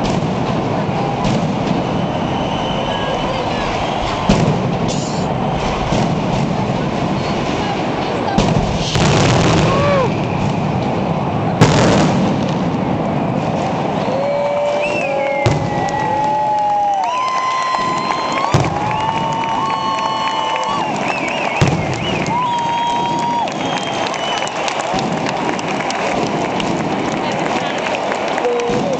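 Fireworks and firecrackers going off in a continuous crackle of rapid pops, with a few heavier bangs near the middle. Partway through, a series of held whistle-like tones sounds over the crackle, with crowd voices in the background.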